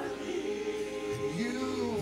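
Gospel worship singing: a man singing into a microphone with a congregation's voices around him, holding one note, then sliding up to a new note about a second and a half in.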